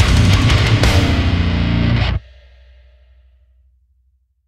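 Heavy metal playback: high-gain distorted electric guitar through a SinMix full-rig capture in Neural Amp Modeler, with bass and drums. It plays loud, then stops suddenly about two seconds in, leaving a faint low ring that fades away.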